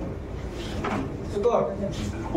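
Voices talking in the background, over a few light knocks and a sliding clunk as pool balls are pressed tight in a rack on the table.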